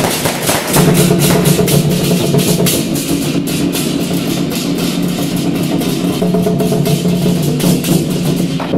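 War-drum troupe beating large barrel drums in a fast, dense rolling rhythm, with sharp crashing strikes layered over it.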